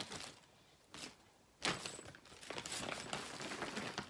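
A crinkly bag rustling and crackling as hands rummage through it, with a couple of short rustles at first and then continuous crinkling from about one and a half seconds in.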